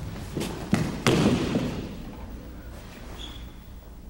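Aikido partner taken down onto the tatami mat: two heavy thuds of body and knees on the mat, the second one about a second in the loudest, followed briefly by the rustle of cotton uniforms as he is pinned face down.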